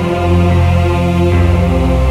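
Dark electro-industrial music: sustained, chant-like chords over a held bass note that drops lower a little past halfway.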